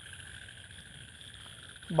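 Faint steady background hiss with a few high, even tones held throughout.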